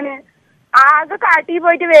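A woman speaking Malayalam over a telephone line, her voice thin and cut off in the highs, with a brief pause about half a second in.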